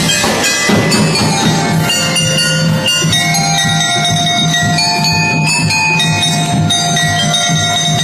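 A school drum and lyre band playing: ringing bell-lyre and mallet-keyboard notes carry a melody over a steady drum beat.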